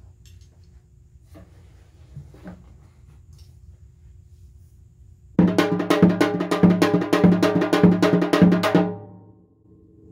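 Janggu, the Korean hourglass drum, being set in place with a few faint knocks, then struck with a thin bamboo stick in a fast, loud run of strokes lasting about three and a half seconds before dying away. The rolling pattern is meant to evoke rain.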